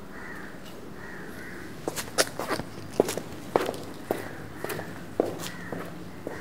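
Footsteps on a hard floor, a regular tread of about two steps a second, starting about two seconds in, over a steady low background hum. Crows caw faintly in the background.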